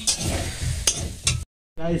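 Potatoes frying in a pan, a low sizzle with a few sharp clinks of a spoon against the pan, cut off abruptly about one and a half seconds in.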